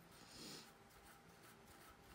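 A brief, soft rubbing sound lasting about half a second near the start, then near silence with faint room tone.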